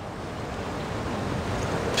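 Steady rushing noise with no speech, growing slightly louder: the background ambience of a large hall picked up through the speaker's microphone.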